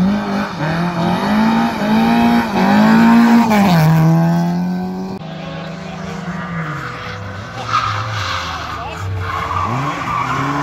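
Lada saloon rally car's engine revving hard, its pitch climbing and dropping through gear changes, with a drop in revs about three and a half seconds in and a climb again near the end. Tyres squeal as the car slides through the bend.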